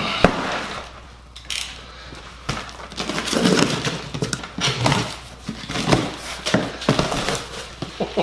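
A long cardboard box is set down on a plastic workbench and handled, with a few sharp knocks at first. Then comes an uneven run of scraping and rustling of cardboard and packing tape as it is opened.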